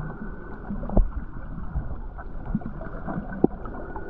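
Underwater ambience picked up by a submerged camera: a steady muffled water rumble, with two sharp clicks, one about a second in and one near the end.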